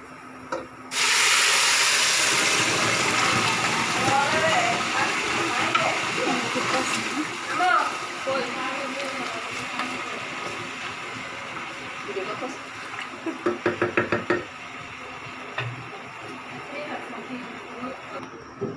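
Water poured onto rice and bay leaves frying in a hot pot: a loud hiss and sizzle starts suddenly about a second in and slowly dies down. Near the end comes a quick run of about eight knocks.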